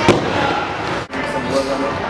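Skateboard wheels rolling close by on a wooden ramp, with a sharp clack of the board right at the start; the rolling noise breaks off about a second in.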